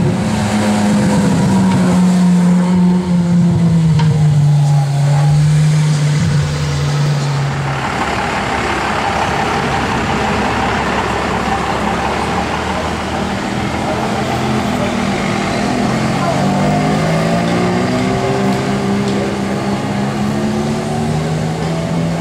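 Car engines accelerating past on a street. A strong low engine note falls in pitch over the first several seconds, a rushing noise follows in the middle, and engine notes climb in pitch near the end.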